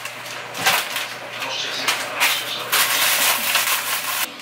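Kitchen handling sounds: dishes and utensils clinking and being moved about on a counter. In the last second or so a louder, denser stretch of noise comes in and cuts off suddenly.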